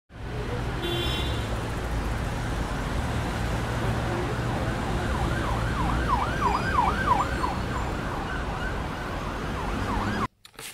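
A steady low rumble like road traffic, with a siren wailing in quick rising and falling sweeps, about three a second, from about halfway through.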